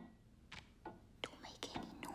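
Faint whispered voice with several soft, sharp clicks.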